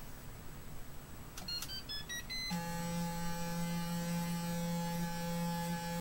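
A Clarisonic Plus sonic facial cleansing brush running on the forehead with a steady low hum, starting about two and a half seconds in. Just before it starts, there is a quick run of short high beeps.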